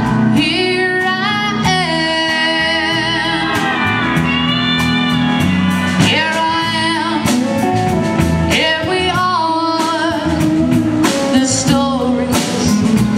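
Live country band playing a song: a woman sings lead with vibrato over pedal steel guitar, electric guitar, bass and a drum kit keeping a steady beat.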